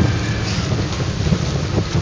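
Wind buffeting the microphone in a steady low rumble, over the running of a motorboat's engine and the slap of choppy water.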